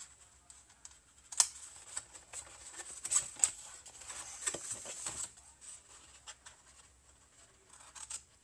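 Scissors snipping through cardstock: several short, sharp cuts, most of them in the first five seconds.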